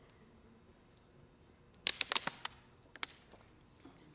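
A thin plastic water bottle being handled: a quick run of sharp crackles about two seconds in, then a single click about a second later.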